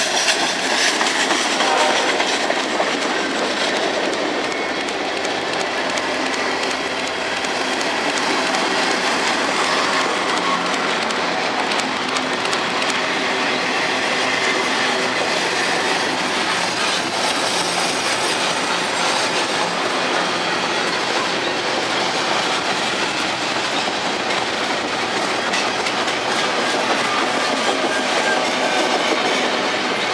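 Freight train of tank cars and boxcars passing close by: the steady noise of steel wheels running on the rails, holding at an even level throughout.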